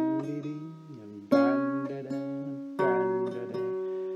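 Acoustic guitar playing slow chords, each left to ring and fade: a new chord about a second and a half in and another near three seconds in.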